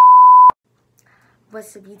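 A single loud, steady electronic beep at one pitch, cutting off suddenly about half a second in. After a second of silence, a girl starts talking near the end.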